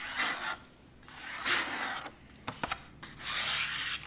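Ganzo G719 automatic knife's blade slicing through a sheet of paper in three separate strokes, each a short rasping hiss, with a few small ticks between the second and third. The paper cuts cleanly as the out-of-box edge is tested, and the edge is super sharp.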